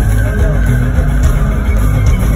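Rock band playing live through a stadium PA, heard from within the crowd, with heavy bass under electric guitar and the rest of the band.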